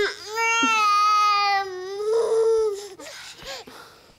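A baby crying in pain: long, loud wails that break off about three seconds in, leaving quieter, shorter cries.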